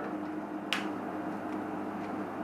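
A single sharp click about three-quarters of a second in, over a steady low hum.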